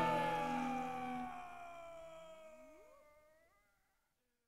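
The last ringing notes of a heavy metal track fading out. A wailing tone slides down in pitch and then sweeps upward as everything dies away, about three seconds in.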